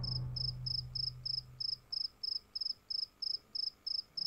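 A cricket chirping steadily, about four short high chirps a second, each a quick trill of a few pulses. A low drone underneath fades out about halfway through.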